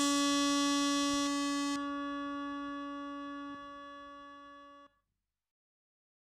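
Baleani Solista, a vintage Italian analogue audio accompaniment unit, holding a single sustained note that fades slowly after its drum pattern stops. It cuts off abruptly about five seconds in.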